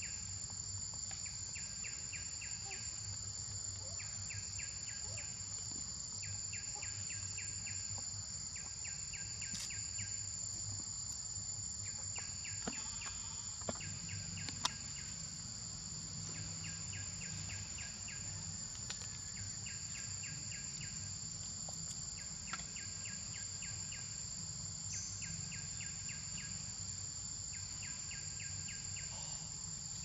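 Forest insect chorus: a steady high-pitched drone, with a pulsed chirp of about a second that repeats roughly every two seconds. A few sharp clicks come in the middle.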